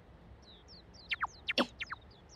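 Small birds chirping: a run of short, high chirps that each slide downward, with four quick, steeply falling whistles in the second half.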